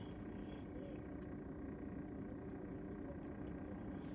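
Faint steady hum inside a car's cabin, with a thin constant tone running under it.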